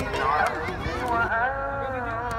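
Voices of children and adults talking and calling out together, with one drawn-out voice near the end.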